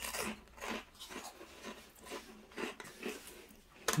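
Chewing crunchy baked cheese snacks, Mini Cheddars biscuits and cheese sticks: a run of short, irregular dry crunches, a few a second.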